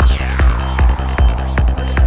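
Goa trance music: a kick drum on every beat, about two and a half beats a second, under a rolling synth bassline. A high synth sweep falls steeply in pitch at the start.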